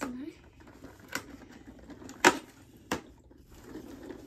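Fingers pressing and prying at the perforated cardboard door of a Lindt chocolate advent calendar: three sharp clicks, the loudest about two and a quarter seconds in.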